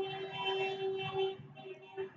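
A person's voice holding one steady hummed note for about a second and a half, wavering slightly before it fades out.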